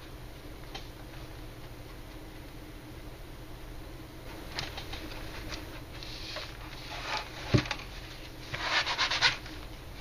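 Handling noise of a plastic model: scattered light clicks and rubbing, a single dull knock about seven and a half seconds in, then a crackling rustle of a paper towel being crumpled near the end, over a steady low hum.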